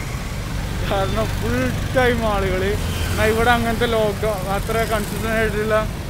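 A man talking over a steady low rumble of city street traffic.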